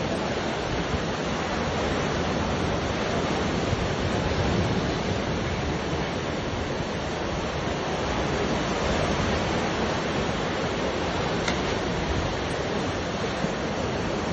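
Sea surf breaking and washing up the shore in a steady rush, with wind rumbling on the phone's microphone.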